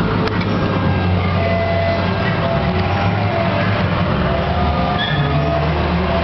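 Fruit machine in play: short electronic tones and beeps over a loud, steady background din, with a single click just after the start.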